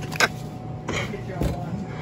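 Quiet background at a store checkout counter: a steady low hum, a brief fragment of voice right at the start, and one soft knock about a second and a half in.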